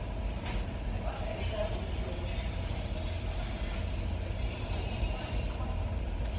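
Steady low background rumble of room noise in a fast-food dining room, with faint voices about a second in.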